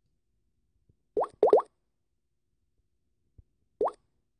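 Short plopping sounds that rise quickly in pitch: three close together a little over a second in, then one more near the end.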